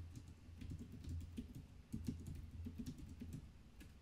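Typing on a computer keyboard: a quick, irregular run of soft keystrokes over a faint low hum, the keystrokes thinning out near the end.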